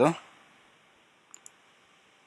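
Two faint computer-mouse clicks in quick succession, like a double click, about a second and a half in, in a quiet room.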